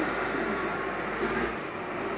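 Caterpillar 980G wheel loader's diesel engine running under load as it works up a steep dirt pile, a steady, even machine noise. Its low hum drops away about one and a half seconds in.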